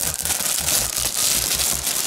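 Fingers rubbing and crinkling glossy wall-decal sticker sheets close to the microphone, a continuous crackling rustle for ASMR.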